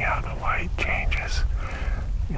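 Men whispering to each other, with a steady low wind rumble on the microphone.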